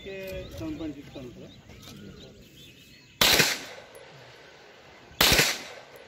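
Two rifle shots about two seconds apart, each a sharp crack with a short echo trailing off.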